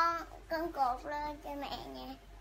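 A young girl's high voice singing a few short notes: one held note at the start, then several shorter ones.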